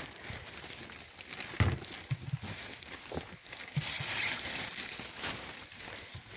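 Rustling and a few light knocks as things are handled and a plastic bucket is picked up inside a fabric enclosure.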